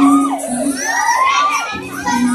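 A young audience shouting and cheering over a song's music, many voices wavering and overlapping above a held note.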